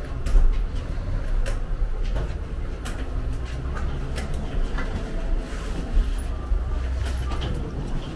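Footsteps and a rolling carry-on suitcase moving through an airport jet bridge, with scattered sharp clicks over a steady low rumble.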